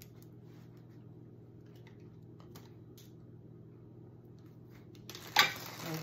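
Small handling sounds as glue dots are peeled from their strip: a few faint clicks over a steady low room hum. Near the end comes one sudden loud handling noise, followed by a spoken word.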